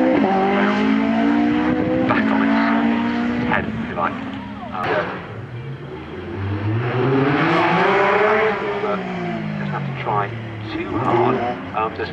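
Rally car engines revving hard, the pitch climbing and dropping back with each gear change as one car pulls away; around the middle another car's engine rises and falls as it approaches and passes.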